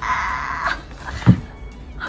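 A woman's hoarse, high-pitched playful squeal, lasting under a second, followed about a second later by a single low thump.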